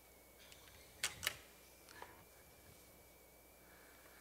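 Two sharp clicks a moment apart about a second in, then a fainter tick, over quiet room tone with a faint steady high whine. They come from handling an acoustic guitar and its pickup while getting its signal into the sound system.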